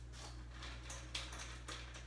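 Plastic vertical blinds being turned open, the vanes clicking and rattling against each other in a quick series of light clacks.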